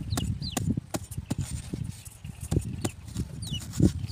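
Machete blade chopping and scraping into hard, dry soil, cutting a narrow trench: a run of irregular dull knocks and scrapes with a few sharp clicks.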